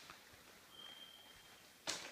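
Quiet room tone with a faint, brief high thin tone in the middle and a single sharp click near the end.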